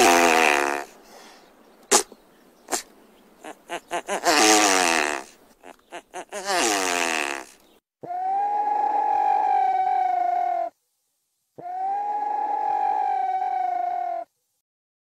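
A sequence of animal calls: three short calls that each fall in pitch, with a few sharp clicks between them, then two long calls held at one steady pitch, about two and a half seconds each, with a short gap between.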